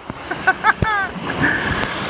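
A man's short excited vocal exclamations over the steady wash of breaking surf.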